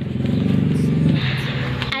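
A motor vehicle's engine running steadily, louder during the first second and then easing off.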